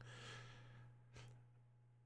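Near silence: a man's faint breath out after speaking, fading over the first second, then a small click, over a low steady hum.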